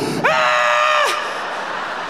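A man's high-pitched falsetto scream, held for about a second and dropping in pitch as it breaks off: a comic scream acting out being sucked down by an aeroplane toilet's flush. Audience noise runs beneath it and carries on after.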